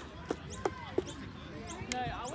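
Five short sharp impacts, the first four about three a second and the last near the end, over faint distant voices.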